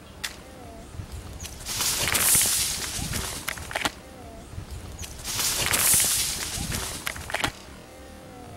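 A loud crackling rustle of dry leaf litter as an unseen animal dashes through the undergrowth. It is heard twice, each rush lasting about a second and a half. The family thought it sounded like a snake.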